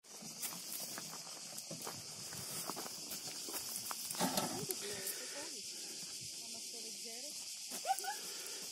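Steady, high-pitched chorus of summer cicadas buzzing without a break, with faint voices and a few light knocks over it.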